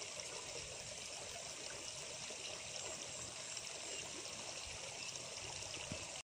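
Water trickling and running steadily into a fish pond, an even, unbroken sound.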